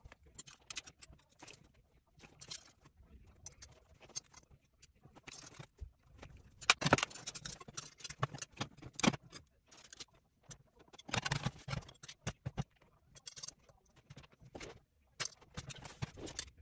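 Aluminium extrusions knocking and clinking against each other and the work surface as the frame pieces are fitted and pushed together by hand. The clicks and knocks come irregularly, the sharpest about seven and nine seconds in.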